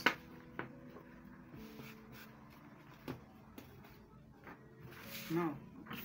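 A sharp knock at the start as scissors are set down on a wooden cutting table, then quiet handling of cloth with a few light taps.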